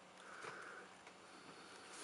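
Near silence, with one faint breath through the nose about half a second in.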